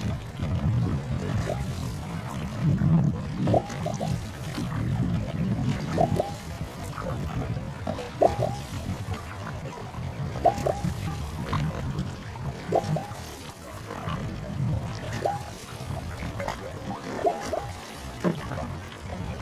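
One-person outrigger canoe being paddled hard over a steady low rumble. A short tonal sound that dips slightly in pitch repeats in time with the paddle strokes, a stronger one about every two seconds with fainter ones between.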